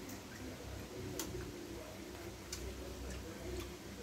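Eating sounds of people eating rambutans: irregular small clicks and smacks from mouths and fruit, about half a dozen in four seconds, over a low murmur.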